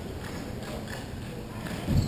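Inline hockey play in an echoing indoor rink: scattered clacks of sticks and puck on the plastic sport-tile floor, ending in a louder low thump.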